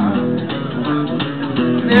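Live band's electric guitar and bass guitar playing a short instrumental fill between sung lines of a blues number.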